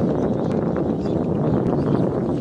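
Steady low rumbling noise, with a few light clicks of thin bamboo sticks being handled in a metal bowl.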